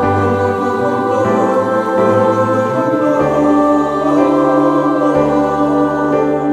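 Mixed choir of men's and women's voices singing in harmony, holding sustained chords that change about every two seconds.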